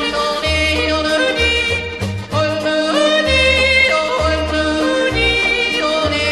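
A yodel song: a yodeling voice leaps between chest and head notes over a band accompaniment, with a bass note about once a second.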